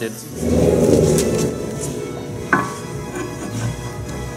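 Metal brake pads being handled and fitted into a brake caliper over background music: a rush of rustling noise in the first second, then a single sharp metallic clink with a brief ring about halfway through.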